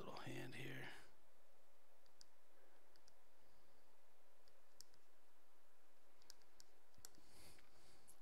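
A brief low voice sound in the first second, then faint, scattered clicks and taps from computer input during digital drawing.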